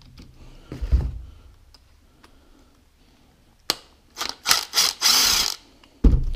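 Cordless impact driver with a hex bit run in several short bursts near the end, backing out an Allen-head bolt from a motorcycle rear brake caliper. A single knock about a second in.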